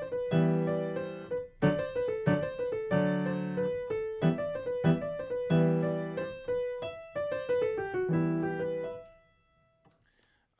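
Digital piano playing a sea shanty in E minor with both hands, in cut time. A left-hand E minor position shifts to D major under right-hand eighth notes, with fuller chords about every second and a third. It ends on a held note that fades out about nine seconds in.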